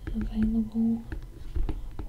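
A man's voice murmuring two short, steady-pitched syllables under his breath, with faint ticks from a stylus writing on a tablet screen.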